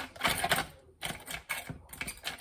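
Ice and a plastic spoon clattering inside the hopper of a small ice crusher as the ice is poked loose: a rapid, irregular run of clicks that stops briefly about a second in, then starts again.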